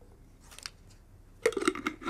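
Chickpeas tipped from a glass jar into a glass mixing bowl: a quick run of clinks and rattles about one and a half seconds in, after a faint click.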